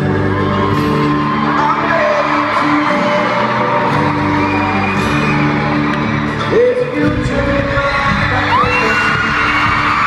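Live pop band music played over a stadium sound system, heard from the stands, with fans' screams and whoops rising over it now and then.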